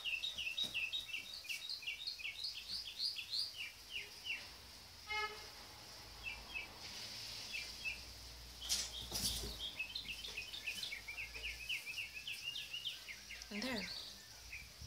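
Small birds chirping in quick runs of short, high notes. A low rumble of road traffic swells through the middle, with one sharp knock near the middle.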